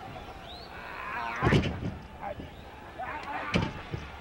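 Arena crowd yelling and jeering, with two sharp thuds from the wrestling ring about one and a half and three and a half seconds in, the first the loudest: blows and impacts landing during the match.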